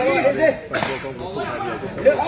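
A takraw ball kicked during a rally: one sharp smack a little under a second in, with a fainter hit before it, over shouting voices.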